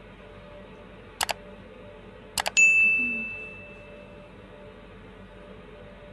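Subscribe-button animation sound effect: a quick double mouse click about a second in, another double click just over a second later, then a bell ding that rings out and fades over about a second and a half.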